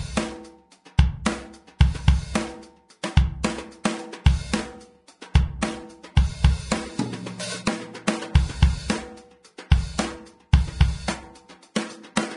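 Sampled drum kit in the MDrummer plugin, played live from the pads of an electronic drum kit: kick, snare, toms, hi-hat and cymbals in a loose groove. Some drums come out far louder than others because each pad has a different, uncalibrated velocity response.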